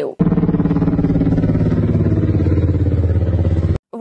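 Helicopters flying low overhead: a loud, dense rotor throb beating fast and evenly, about fifteen beats a second, over a low engine drone. The low drone swells a little past halfway, and the sound starts and cuts off abruptly.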